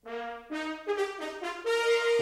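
Brass fanfare opening a TV theme: a quick run of separate notes climbing to a held note near the end.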